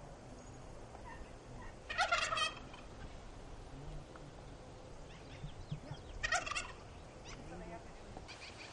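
A farm bird gobbling twice: a short, rapid warbling call about two seconds in and another near six seconds.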